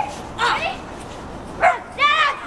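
Dog giving short, high-pitched yips, twice: about half a second in and again near the end.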